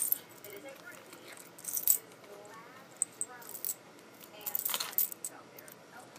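A heavy metal chain necklace clinking and jingling as it is handled, in a few short bursts.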